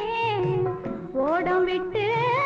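Music from an old Tamil film song: a sliding melodic line with a rising glide a little after the middle, over lower accompaniment.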